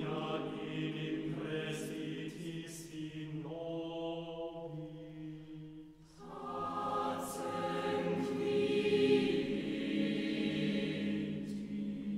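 Mixed chamber choir singing unaccompanied in sustained chords. There is a brief break about halfway through, then a new, fuller phrase swells and eases off toward the end.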